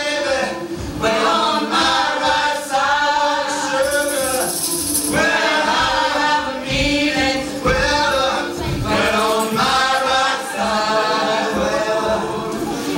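Mixed group of men and women singing a Creole jazz spiritual together in harmony, in short phrases with brief breaths between, backed by hand-held tambourines.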